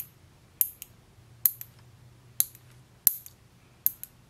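Metal fingernail clippers snapping shut as they clip fingernails: about six sharp clicks, roughly one every half second to second, some followed by a smaller second click.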